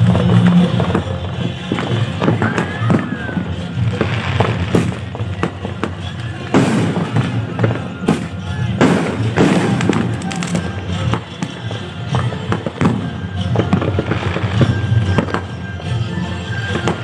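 Aerial fireworks going off in an irregular series of bangs and crackles, the loudest few clustered in the middle. Music plays steadily underneath.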